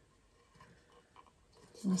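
Near silence with a few faint light clicks from a small bottle being handled at a table, then a woman starts speaking near the end.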